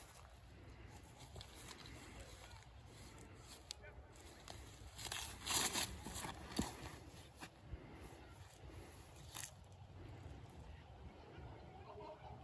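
Faint outdoor ambience with a low wind rumble. About five to six seconds in, a short burst of rustling and crunching comes from footsteps through dry fallen leaves and grass during a backhand disc golf throw, followed by a couple of sharp clicks.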